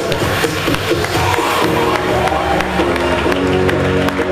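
Music with a regular beat; sustained notes come in about halfway through.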